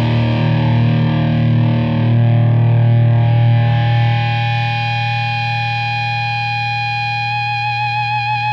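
1989 Gibson Les Paul Custom with Bill Lawrence "The Original" humbuckers, played with heavy distortion. Low chords are held and ringing, and a sustained note with vibrato comes in near the end.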